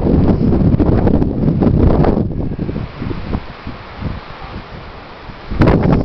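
Wind buffeting the microphone. It rumbles heavily for about the first two seconds, then eases to a lighter, steadier hiss.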